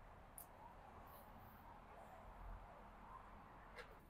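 Near silence: faint outdoor background, with a slight low rumble about halfway through.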